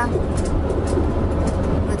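Steady low rumble of a car's engine and road noise heard inside the moving car's cabin.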